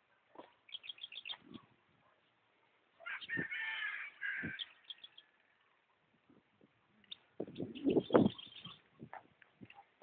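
Birds calling in quick runs of short chirps, with a busier stretch of calls in the middle. Near the end a louder, low rustling burst comes in under more chirps.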